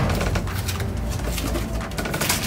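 Plastic produce bags and cardboard boxes rustling and crinkling as they are handled and shifted in a dumpster, over a steady low hum.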